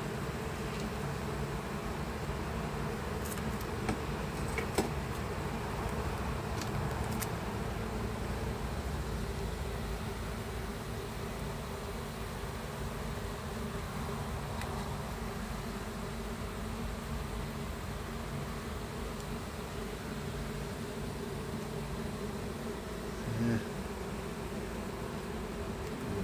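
Honeybees buzzing in a steady drone around an open hive. A few faint clicks come in the first several seconds.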